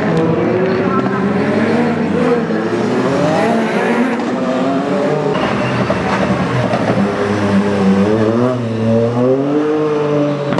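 Ford Fiesta rally car engine revving hard and repeatedly, its pitch climbing and then dropping again with each gear change and lift-off.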